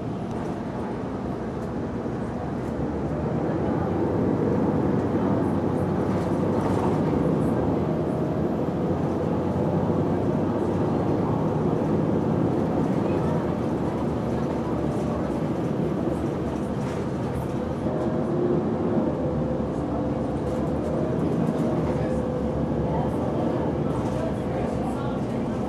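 Steady engine and road noise inside a moving city transit bus, getting louder about four seconds in and staying up.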